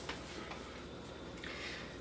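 Faint rustling and a few small clicks of a paper sewing-pattern envelope being handled and turned over, over a low steady room hum.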